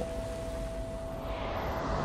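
A soft rushing whoosh that swells through the second half, over a single steady held music tone.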